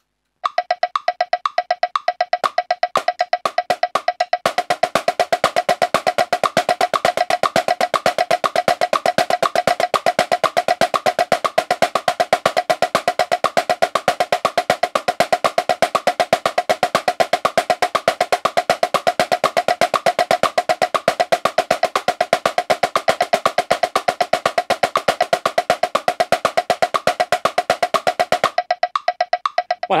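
A metronome clicks at 120 beats per minute, about two clicks a second. From about four seconds in, a marching snare drum plays steady sixteenth notes with accents and flams: the choo-choo moving rudiment grid. The drumming stops about a second and a half before the end, and the click carries on alone.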